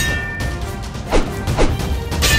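Two sword-clash sound effects, metal blades striking, about half a second apart in the second half, over dramatic background music.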